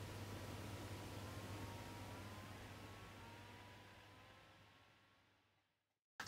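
Near silence: a faint steady low hum and hiss that fade out to complete silence.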